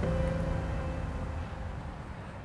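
Low steady background rumble with a faint held tone, fading out gradually.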